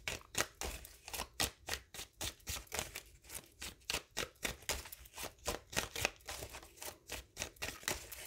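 Tarot deck being shuffled by hand, the cards slapping and clicking against each other about four times a second.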